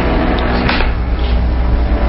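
Steady low drone of an airplane's engines heard in the cockpit, a radio-drama sound effect, with a couple of faint clicks about half a second in.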